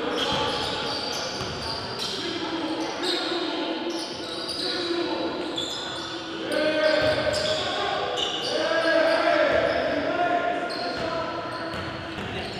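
Basketballs bouncing on a hardwood gym floor, with players' voices in the reverberant hall.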